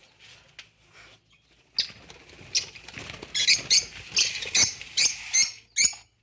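Small birds making rapid, high-pitched rasping chirps, closely packed over the last few seconds and stopping abruptly just before the end.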